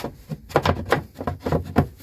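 Removable floor panel of a motorhome kitchen cupboard being handled and set back into place: a quick run of light knocks and scrapes, about half a dozen in two seconds.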